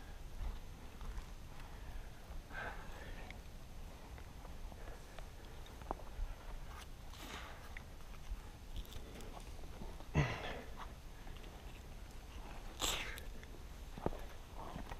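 A person breathing: a few short exhales close to the microphone, about four in all, over a low rumble.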